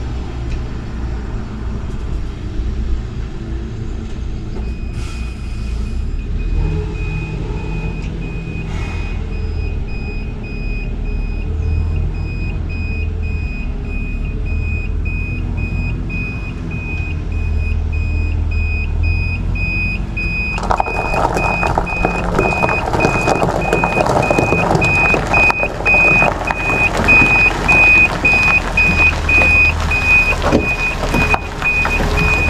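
Mercedes-Benz Actros SLT heavy-haul truck with a Goldhofer low-loader reversing: its diesel engine runs low and steady, and from about five seconds in a reversing beeper sounds an evenly repeated high beep that grows louder as the truck comes closer. About two-thirds of the way in, tyres crunching over gravel come in loudly.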